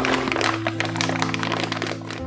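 A crinkling plastic bag and dry cocoyl glutamic acid flakes pouring into a stainless steel bowl, a dense crackle that stops just after the end. Background music with held tones plays under it.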